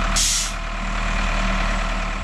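Diesel engine of a Caterpillar IT28B wheel loader running steadily under load, with a short burst of hiss about a quarter second in.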